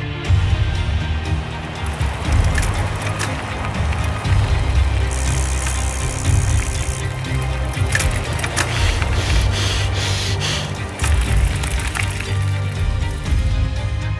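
Background music with a heavy, steady bass beat. A bright hiss rises over it for about two seconds near the middle.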